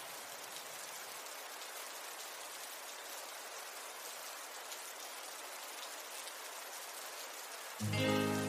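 Heavy rain falling, a steady, even hiss. Music comes in just before the end.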